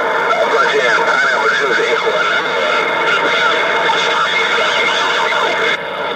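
Galaxy radio transceiver's speaker carrying a strong but unintelligible incoming transmission: distorted, overlapping voices with whistles over static. It stays loud and steady, then drops out shortly before the end.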